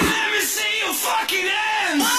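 Electronic dance music in a break: the pounding drums and bass drop out, leaving a voice-like line that swoops up and down in pitch.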